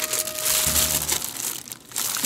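Clear plastic bag around a baseball glove crinkling as it is handled and squeezed, easing off about one and a half seconds in.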